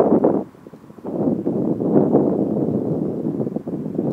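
A car going by on the road, its noise swelling from about a second in and easing off near the end, mixed with wind buffeting the microphone.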